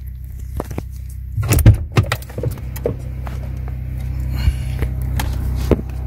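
Handling noise of a hand-held wire and probe: a cluster of clicks and knocks about a second and a half in, over a steady low hum.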